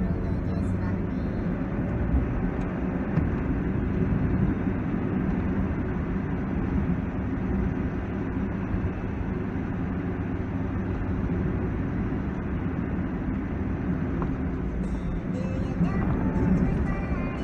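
Steady engine and road noise inside the cabin of a Hyundai i20 while driving.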